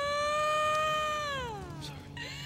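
A single long wailing cry, held on one pitch and sliding down as it fades near the end.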